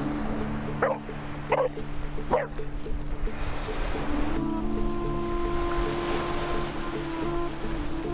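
Background music with held notes, over which a boxer puppy gives three short yips in the first few seconds.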